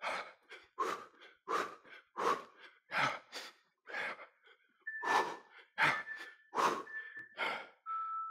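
A man breathing hard and fast after a sprint interval, about one breath every three-quarters of a second. A faint steady high tone sounds under the breaths in the second half.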